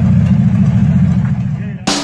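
The engine of a 1969 Torino 380 running at a steady idle with the hood open: a deep, even rumble with no revving. Music with a hard beat cuts in near the end.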